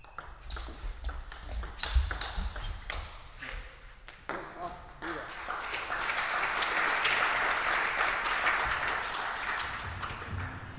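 Table tennis rally: the celluloid ball clicking in quick succession off bats and table. The rally ends about five seconds in, and a shout is followed by a spell of spectator applause.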